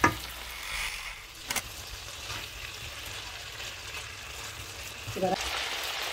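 Beef and potato curry sizzling steadily in a nonstick wok while it is stirred with a silicone spatula, with a couple of sharp clicks, one right at the start and one about a second and a half in.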